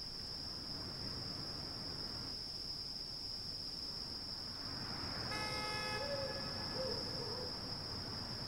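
Quiet ambience with a steady high-pitched whine and a low rumble. About five seconds in comes a brief horn-like toot, then a faint wavering tone for a second or so.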